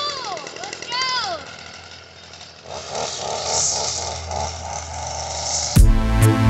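Stihl FS 45 string trimmer's small two-stroke engine running just after starting, with a boy's excited whooping over it in the first second and a half. About three seconds in the engine comes up louder with a fast pulsing as the trimmer is put to work. Electronic music cuts in abruptly near the end.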